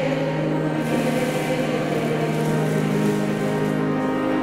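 Congregation singing a hymn in church, over a long held low note.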